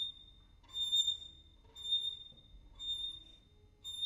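Solo violin playing a repeated very high note in short bowed strokes, about one a second, each note dying away into a quiet pause before the next.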